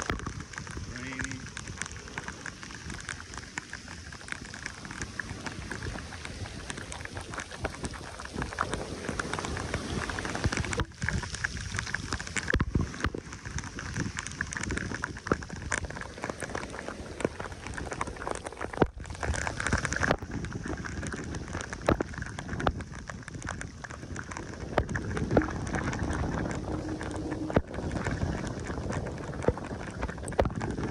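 Rain falling steadily, with many individual drops landing close by as sharp ticks over the hiss.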